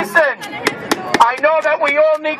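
A man's voice shouting through a handheld megaphone, harsh and distorted, with sharp crackling clicks breaking through the words.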